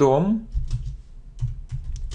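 Typing on a computer keyboard: a quick run of keystrokes following the end of a spoken word.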